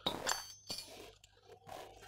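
Faint handling noise of generator wiring and a plastic AVR connector being moved by hand, with a few light clicks in the first second.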